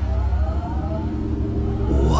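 Anime sound effect: a deep, steady rumble with a faint, slowly rising whine above it.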